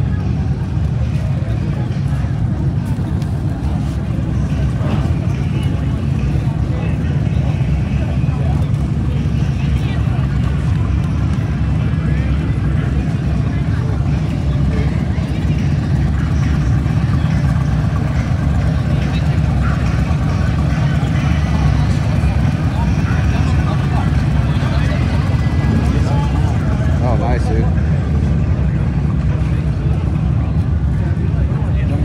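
Motorcycle engines running and riding slowly along a crowded street, a steady low rumble, with people's voices chattering around it.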